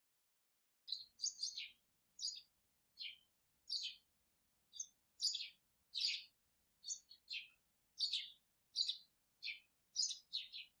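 A small bird chirping repeatedly: short, high, mostly downward-sliding chirps about one or two a second, starting about a second in.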